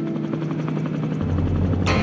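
Helicopter rotor beating rapidly and regularly over held notes of background music. A low drone comes in a little past halfway, and a sharp swish near the end leads into the next passage of music.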